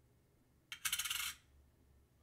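A half dollar set down on the metal pan of a small digital scale, clinking and rattling for about half a second. The coin is being weighed to check whether it is silver.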